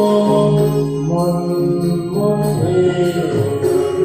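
Devotional song: a singer holding long notes that glide in pitch, over instrumental accompaniment.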